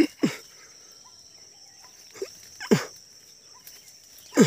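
Four short vocal calls, each falling in pitch, come in two pairs about two and a half seconds apart, over a steady high insect drone.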